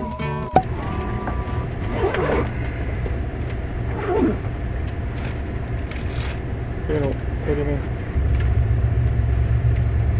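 Low steady rumble inside an Amtrak Auto Train coach car, growing louder about eight seconds in, with faint voices in the background. Background music ends in the first half second.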